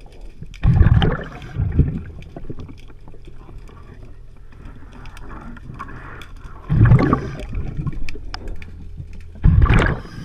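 Underwater, a scuba diver's exhaled breath bubbles out of the regulator in loud bursts: about a second in, near seven seconds, and again near the end. Between the bursts there is a steady low hum and scattered faint clicks.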